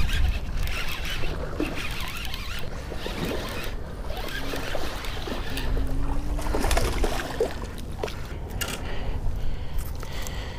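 Fishing reel being cranked and water splashing as a hooked bass is reeled in and brought to hand, over a steady low rumble of wind on the microphone.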